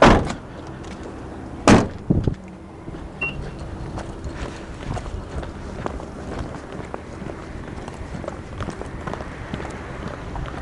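A car door shut with a loud knock, then a second, sharper slam less than two seconds later, followed by scuffing footsteps and handling noise on concrete.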